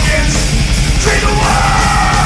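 Heavy metal band playing at full volume, distorted guitars, bass and drums, with a shouted vocal line over the top.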